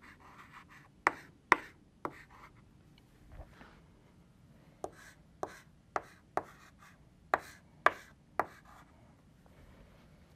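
Chalk writing on a blackboard: sharp taps as the chalk strikes the board, about ten in all, three near the start and a run of seven in the second half, with faint scratching strokes between them.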